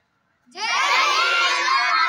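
A group of schoolchildren shouting together in a loud cheer, many young voices at once, breaking out about half a second in after a moment of silence.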